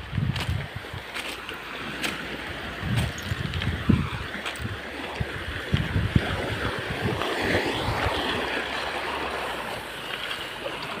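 Wind buffeting the microphone in irregular low gusts over a steady rushing background.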